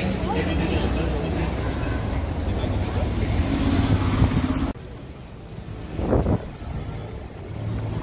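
City street traffic with the engine of a city bus passing close by, swelling as it goes past. About halfway through, the sound cuts off abruptly to quieter street ambience, broken by one short burst of noise.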